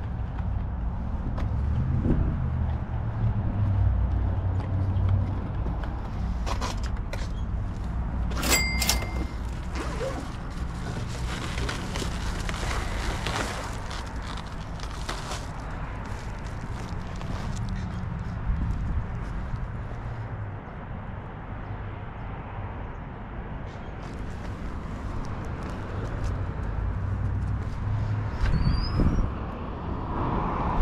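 Footsteps on a concrete walkway over a low, uneven rumble on a body-worn camera's microphone, with scattered small clicks and a short high beep about eight and a half seconds in.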